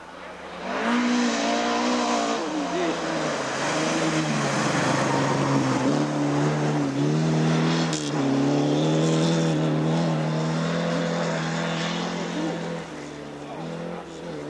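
Rally car engine revving hard at full race pace, its pitch climbing and dropping again and again as it is driven through the stage. It is loud for about twelve seconds, then fades away near the end.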